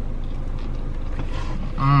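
Steady low hum of a car running while stationary, heard from inside the cabin, with faint chewing. Near the end a man hums a loud, appreciative 'Mmm' at the taste of the food.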